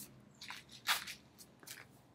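A few soft, brief swishes as a plastic flying toy is thrown by hand, the loudest about a second in.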